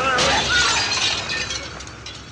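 Window glass shattering just after the start, the crash trailing off over the next second or so, with a woman's frightened cries over it.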